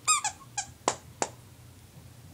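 Squeaker in a stuffed ladybug toy squeezed by a small dog's bite: a wavering squeak at the start, a shorter one about half a second in, then two quick sharp squeaks around a second in.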